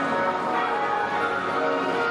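Music with many held, bell-like chiming tones at a steady level.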